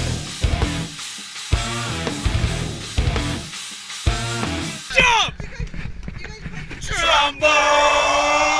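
Live ska-metal band with a horn section playing a stop-start riff: distorted guitar, drum kit and horns hitting hard together, with short gaps between the hits. About five seconds in the music cuts off, and near the end people let out a long, drawn-out shout.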